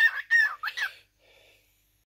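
Cockatiel chattering: a quick run of short, warbling chirps, about four in the first second, then it stops.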